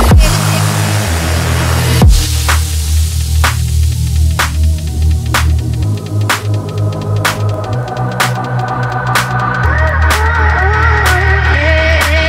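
Electronic dance music: a heavy sustained bass line under a steady beat of about two hits a second, with a falling bass sweep at the start and another about two seconds in. A wavering synth melody comes in over the second half.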